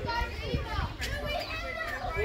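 Children's voices at play, several overlapping, calling out and chattering.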